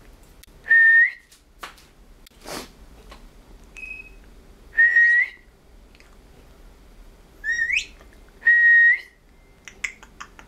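Blue-headed pionus parrot whistling: four loud, short whistles at about the same pitch, each flicking upward at its end, the third one sliding steeply up. A short breathy puff and a few faint clicks fall between them.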